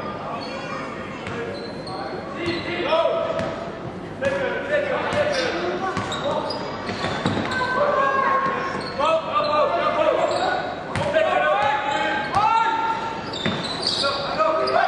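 Sounds of a basketball game in a sports hall: the ball bouncing on the court, with voices of players and spectators calling out over one another and a few sharp knocks in between.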